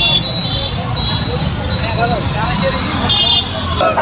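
Many motorcycles running together in a procession, a low engine rumble throughout, with crowd voices over it and short horn beeps near the start and about three seconds in.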